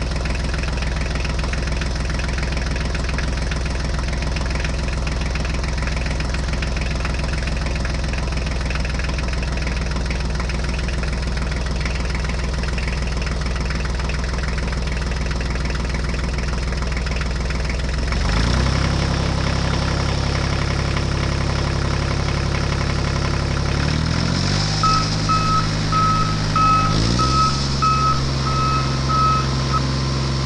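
Tractor engine running steadily, changing pitch about two-thirds of the way through and shifting again shortly after. Near the end a vehicle reversing beeper sounds, about two beeps a second.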